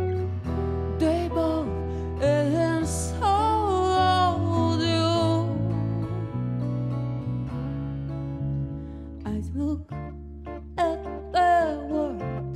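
Live small-band jazz: a woman singing over two guitars and a fretless electric bass. Her voice drops out for a few seconds in the middle while the guitars and bass carry on, and comes back near the end.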